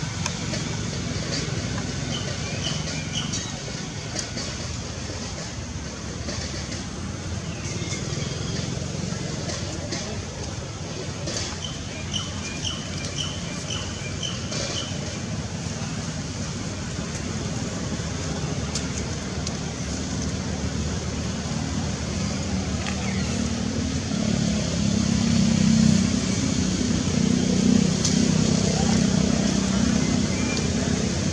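Steady outdoor background noise like passing traffic, with a low hum that grows louder in the last few seconds. Two short runs of quick high chirps sound over it.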